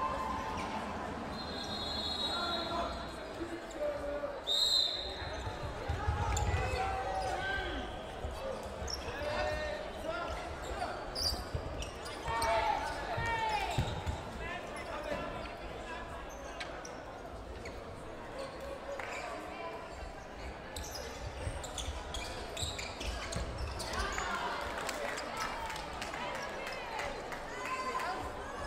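Cloth dodgeballs thudding on a wooden sports-hall floor and off players during rally play, with players shouting and calling in a large echoing hall. A brief shrill tone sounds about four and a half seconds in.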